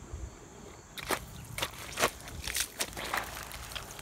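Footsteps in wooden mud pattens tied under sneakers, stepping through wet mud and low weeds. Several irregular soft crunches and squelches start about a second in as the boards are lifted and set down.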